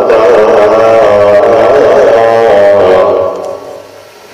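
A man's voice chanting the Sikh hukamnama in a drawn-out melodic recitation into a microphone. One long wavering note fades out a little after three seconds in.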